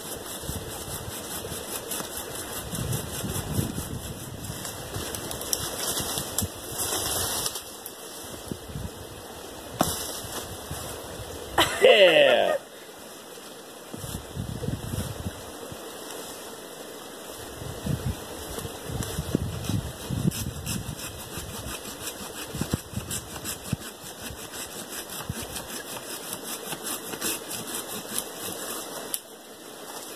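Hand saw cutting through a sapling stem low to the ground in a run of sawing strokes, with dry leaves rustling. A brief falling vocal sound comes about twelve seconds in.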